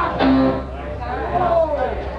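An electric guitar note rings briefly about a quarter second in, over voices on a lo-fi live concert recording, with the band about to start a song.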